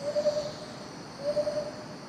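Tropical highland forest ambience: an animal call, a single steady note held about half a second, repeating about once every second and a quarter (twice here), over a steady high-pitched insect drone.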